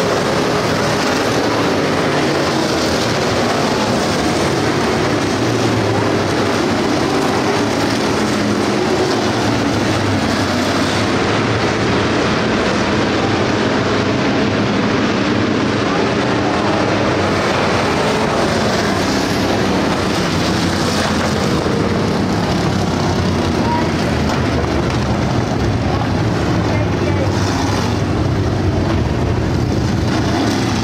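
A field of Road Warrior-class dirt-track race cars running laps under race power, their engines making a steady, loud, continuous din with no break.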